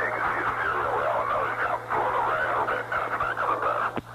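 Garbled, distorted air-to-ground radio transmission: a muffled voice buried in static, then cuts off suddenly. A steady low hum runs underneath.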